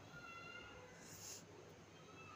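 Near silence with a faint, thin, high-pitched animal call in the first part, and a brief soft hiss about a second in.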